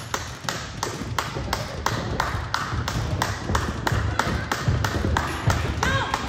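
Steady hand clapping, about three sharp claps a second, keeping time for an exercise drill.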